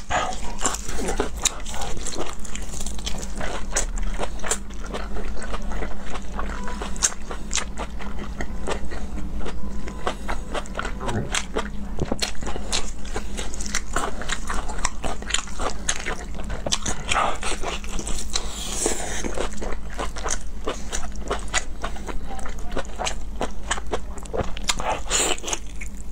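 Close-miked biting and chewing of sauced honeycomb beef tripe: a dense run of quick, wet mouth clicks and tearing sounds over a steady low hum.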